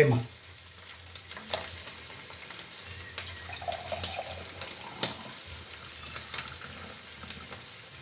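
Minced meat frying in a pan with a steady sizzle, broken by a few sharp clicks. In the second half, milk is poured from a plastic sachet into a glass jar.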